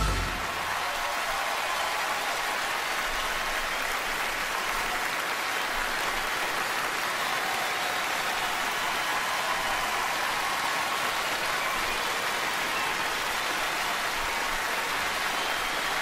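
A live concert audience applauding steadily at the end of a song.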